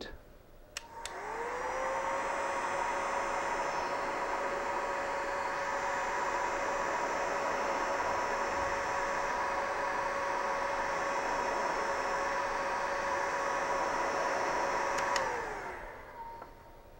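Electric heat gun switched on with a click about a second in, its fan whine rising to a steady pitch over a rush of blowing air, as it heats shrink tubing over a wire connector. Near the end it clicks off and the whine falls away.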